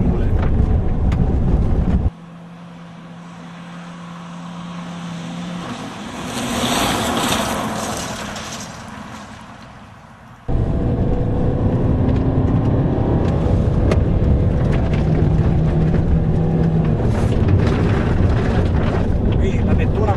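Fiat Bravo driven hard on a gravel road: loud engine and tyre-on-gravel rumble heard from inside the cabin. About two seconds in it cuts to a roadside view, where the car is heard approaching, passing about seven seconds in with a rush of gravel noise, and fading away. Loud cabin engine and gravel rumble returns abruptly after about ten seconds.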